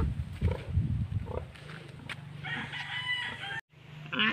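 A rooster crowing, starting a little past halfway and cut off suddenly near the end.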